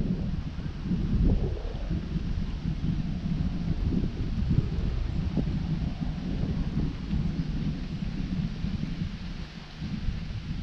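Wind buffeting an action camera's microphone: an uneven, gusty low rumble over a steady fainter hiss.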